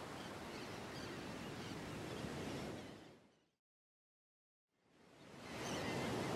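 Steady outdoor ambience, an even hiss with faint high chirps, fades out about three seconds in. After about a second and a half of silence, a steady rush of surf on a rocky shore fades in.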